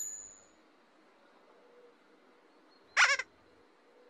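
A short, high, wavering squeak of a character's voice about three seconds in, after a chime rings away at the start; otherwise near silence.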